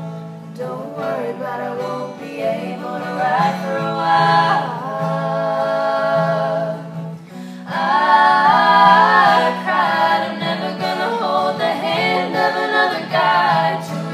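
Young voices, male and female, singing with a strummed acoustic guitar; about eight seconds in the singing gets louder as all three voices join in harmony.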